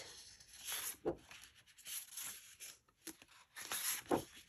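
Sheets of patterned scrapbook paper being handled and turned over, giving several short, soft rustles and slides of paper.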